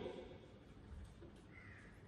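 Near silence: room tone in a hall, with one faint short call near the end.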